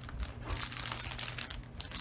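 Hands rummaging through crinkly items, a quiet, irregular run of rustles and small crackles.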